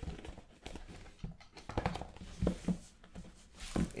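Trading cards and a small cardboard box being handled on a tabletop: scattered light knocks, taps and rustles, with a few sharper taps.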